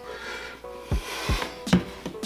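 Background hip-hop beat with two deep kick-drum hits in the second half, over soft rubbing and handling of a plastic bottle as it is tipped and set down on a kitchen counter.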